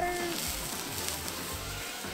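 Water squirted from a squeeze bottle sizzling on a hot steel flat-top griddle among browning ground beef and taco seasoning. The hiss swells about half a second in.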